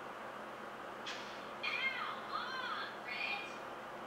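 A few short, high-pitched squealing cries from a TikTok clip's soundtrack: one brief squeak about a second in, then a run of rising-and-falling whines, then one more shortly before the end.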